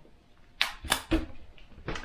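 A few short, light knocks of a small wooden frame against a wooden tabletop, about four in all, spread over a second and a half.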